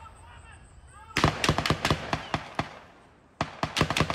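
Rapid strings of gunshots from an exchange of gunfire: a burst of about ten shots starting about a second in, a pause, then another burst near the end.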